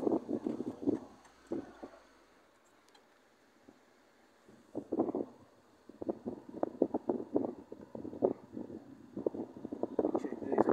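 Wind buffeting the phone's microphone from a slowly moving car, in rough, crackling gusts that die away to near quiet for a couple of seconds in the middle, then return.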